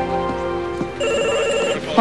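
Background music, then about a second in an electronic desk telephone rings with a short warbling trill.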